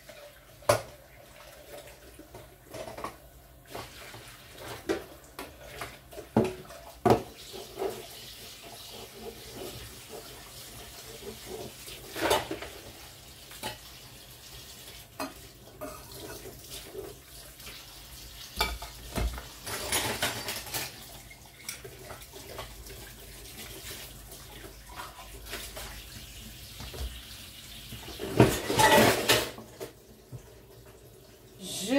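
Dishes being washed by hand in a kitchen sink: plates and cutlery clinking and knocking against each other, with water running from the tap in a few short spells, the longest near the end.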